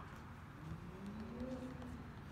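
A faint, drawn-out voice, one long call slowly rising in pitch, over quiet outdoor background noise.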